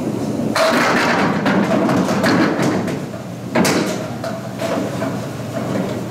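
A candlepin bowling ball rolling on the wooden lane crashes into the candlepins about half a second in, and the pins clatter and scatter for a couple of seconds. A second sudden clatter follows about three and a half seconds in.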